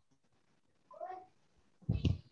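Quiet room tone with one short, high-pitched, meow-like call about a second in, and a low thump just before the end.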